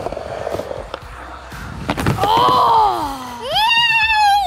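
Skateboard wheels rolling on a wooden ramp, with a sharp clack about two seconds in. This is followed by two long, excited wordless shouts from kids, the first falling in pitch.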